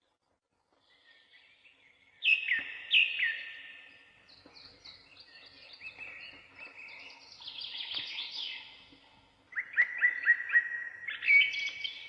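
Songbirds singing: clear whistled notes sliding downward start about two seconds in, followed by busier twittering, then a quick run of short repeated notes near the end.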